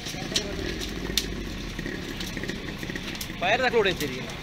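Outdoor noise at a burning shopfront: a low engine-like rumble in the first half, scattered sharp pops and cracks from the fire, and a person's loud call near the end.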